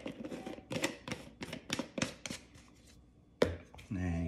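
Light, irregular plastic clicks and taps from handling a plastic powder tub and its lid, then one sharper click a little before the end.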